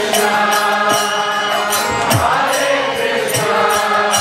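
Kirtan: voices chanting a mantra over the held, reedy chords of a harmonium, with small brass hand cymbals (kartals) ringing in a steady beat. Low hand-drum strokes whose pitch slides down come in now and then, most clearly about halfway through.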